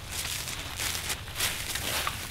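Footsteps crunching through dry fallen leaves, a few steps about half a second apart, over a low steady rumble.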